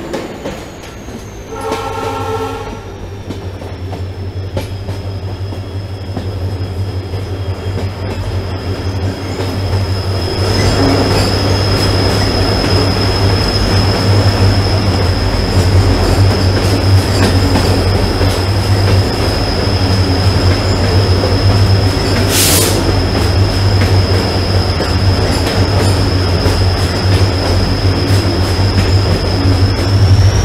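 Passenger train heard from an open coach doorway: a high, steady wheel squeal from the flanges grinding on a curve, with a short locomotive horn blast about two seconds in. From about ten seconds in the rumble of the wheels and coaches grows louder and heavier as the train runs into a tunnel.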